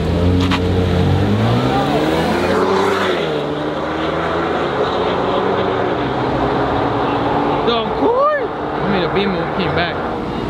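A BMW and a Ford launching side by side in a street drag race, their engines revving up and rising in pitch for the first few seconds, then fading as the cars pull away. Spectators shout near the end.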